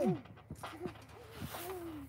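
A small child's voice making short gliding vocal sounds, then one longer held note near the end.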